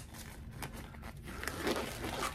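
Extra-thick black nitrile disposable glove being stretched and pulled onto a hand: faint rustling of the material with small scattered clicks.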